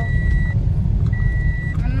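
Steady low rumble inside a car's cabin with a repeating high electronic warning beep, each beep about half a second long with a similar gap, just under one a second.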